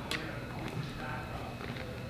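Soft handling of an underwater camera housing's dome assembly, with one light click just after the start.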